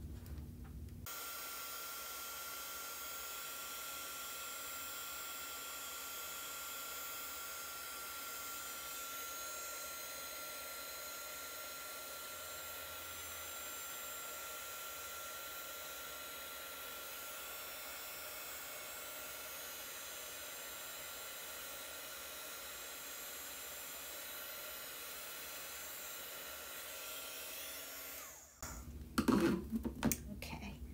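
Craft heat tool (embossing heat gun) blowing hot air with a thin steady whine, melting embossing powder on cardstock. It switches on about a second in and cuts off near the end.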